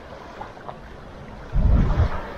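Wind on the microphone over a steady hiss of wind and small waves on a pebble shore, with a loud low gust buffeting the microphone about one and a half seconds in.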